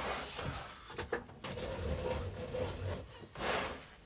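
Quiet handling at a table saw with a few sharp clicks about a second in, from the saw's switch being pressed while no motor starts: the saw is unplugged.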